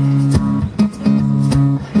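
Live band playing a short instrumental bar: a strummed acoustic guitar holds chords over electric guitar, with a few drum strikes.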